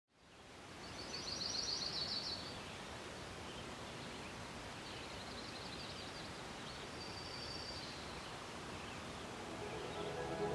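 Outdoor ambience fading in: a steady hiss of open-air noise with birds chirping in short trills, about a second in and again around five and seven seconds.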